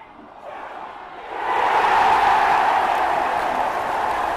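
Steady rushing noise that swells in about a second and a half in and then holds.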